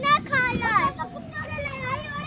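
A young child talking in a high voice: short phrases with brief pauses.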